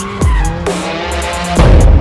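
Electronic music mixed with a BMW M4 drifting, its rear tyres squealing as they skid. The sound gets louder shortly before the end.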